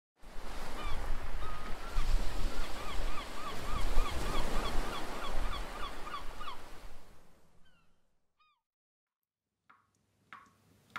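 A bird calling in a quick series, about three short rising-and-falling calls a second, over a loud rushing noise with a deep rumble; the calls thin out and everything fades away about eight seconds in.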